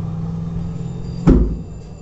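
A steady low hum, with a single thump about a second in as a hand pats cloth flat on a padded pressing table.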